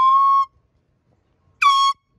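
Handheld canned air horn sounding two loud blasts, each a steady piercing tone that dips in pitch as it starts: the first is already sounding and cuts off about half a second in, and a shorter second blast comes near the end.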